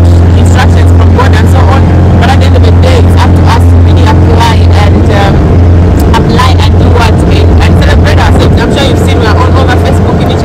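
Motorboat engine running steadily at cruising speed, a loud, low, even drone under a woman's talking.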